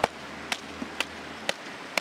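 Sharp knocks repeating evenly, about two a second.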